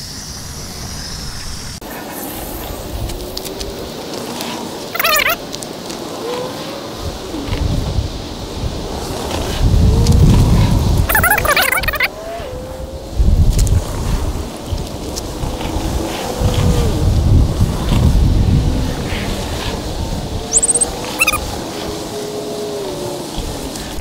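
Water from a garden hose running and spraying as a bundle of small latex water balloons fills through their straw tubes, with some balloons leaking jets of water. Bursts of low rumbling come and go, and there are a few brief squeaks.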